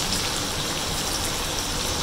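Sliced onions sizzling steadily in hot ghee in a frying pan.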